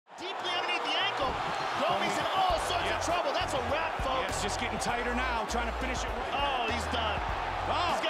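Fight-broadcast audio: a commentator's voice and excited voices over a music track with a deep bass line that changes note every second or so.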